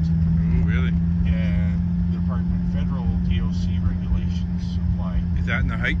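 Cabin drone of a 1990 Nissan Pulsar GTi-R's turbocharged four-cylinder engine and road noise while cruising: a constant low hum that holds one pitch, with no revving.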